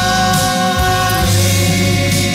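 A small mixed group of men and women singing a hymn together into microphones, holding long notes that move to new pitches a little over a second in.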